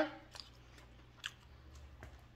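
Faint chewing of a mouthful of birria egg roll, mostly quiet, with two soft mouth clicks about a third of a second and just over a second in.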